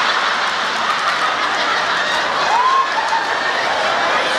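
Audience applauding steadily, with a few scattered laughs.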